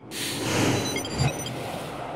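Title-sequence sound effect: a sudden swell of noise, like a whoosh or cymbal wash, that sets off sharply and fades out slowly, with a low hit and a few short high blips about a second in.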